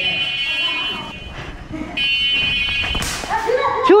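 An electronic buzzer sounds twice, each steady high buzz about a second long, a second apart. A sharp crack follows about three seconds in.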